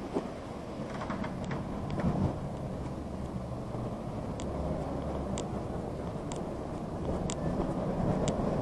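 Steady low rumbling noise from a body-worn camera carried by someone walking, with faint sharp clicks about once a second.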